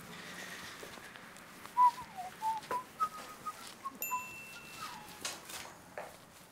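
A person whistling a short tune of about a dozen quick notes, starting a little under two seconds in. A brief high, thin beep sounds about four seconds in.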